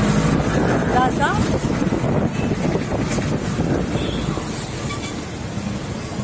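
Outdoor street market ambience: a dense murmur of voices and traffic noise, with one voice briefly heard about a second in.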